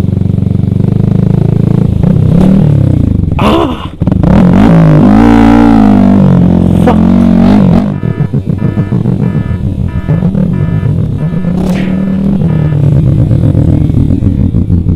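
Yamaha R15 V3's single-cylinder engine running at low speed, its pitch rising and falling with the throttle. Music plays alongside, with a regular beat in the second half.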